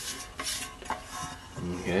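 Metal pans of an old US military mess kit knocking and scraping against each other as they are handled: a few light clinks, one about a second in leaving a brief ringing tone.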